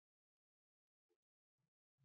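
Near silence: a gap between words in a spoken maths lesson.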